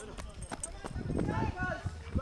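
Footsteps of a person running on a dirt path, a string of short footfalls, over a low rumble of wind on the microphone.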